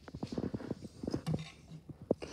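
Plastic construction-toy figures being handled and walked across a tabletop, giving a string of light, irregular taps and knocks.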